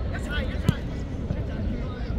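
Faint shouts and chatter from a youth football match over a steady low rumble, with one sharp knock about two-thirds of a second in: a football being kicked.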